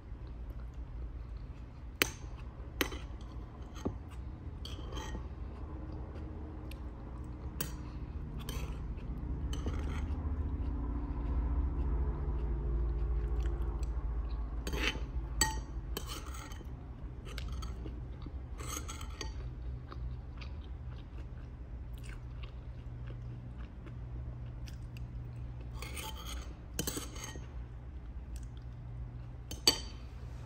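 Metal spoon clinking and scraping against a ceramic soup bowl while a person eats and chews soup, with a few sharper clinks about two seconds in, midway and near the end. A steady low hum sits underneath and swells for a few seconds in the middle.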